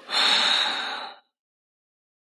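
A man's sharp, tearful breath while crying, one noisy rush of air lasting about a second.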